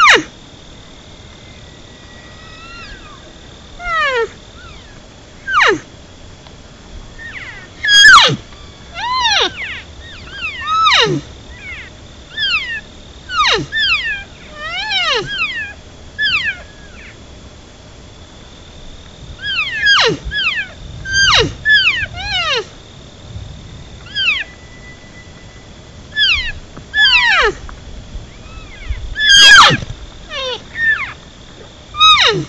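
Cow elk mews and chirps: about twenty short, high calls, each sliding down in pitch, coming singly and in quick runs of two or three. The loudest come about eight seconds in and near the end.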